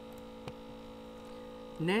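Steady electrical hum made of several even tones, with a single faint click about half a second in.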